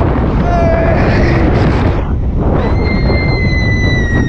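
Heavy wind rush buffeting the microphone of a rider on a steel roller coaster as the train dives and banks at speed. Riders shout briefly about half a second in, then one lets out a long, high, held scream starting about two and a half seconds in.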